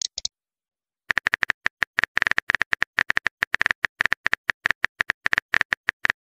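Smartphone keyboard tap sound effects: a rapid, even run of typing clicks that starts about a second in, as a text message is typed out. A short high blip sounds at the very start.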